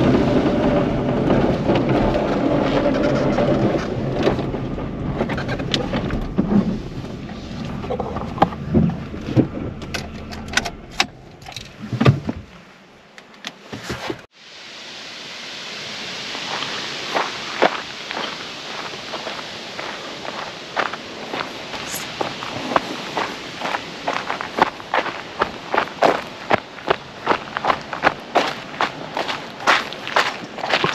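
Volkswagen New Beetle heard from inside the cabin, rolling slowly over a dirt and gravel track with the engine running and tyres crackling on stones; the car goes quiet about twelve seconds in. After that, footsteps crunch on gravel, about two steps a second.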